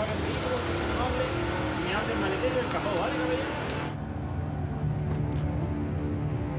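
A man giving an instruction over a car engine idling, with low traffic noise. About four seconds in, the sound changes abruptly to a low, steady music drone.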